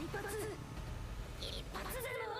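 Anime character's dialogue from the episode's soundtrack: a strained, quavering voice shouting short lines, over a low background rumble.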